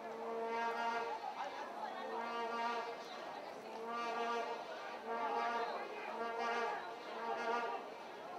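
A vuvuzela blown in a string of blasts, about one a second, all on the same note.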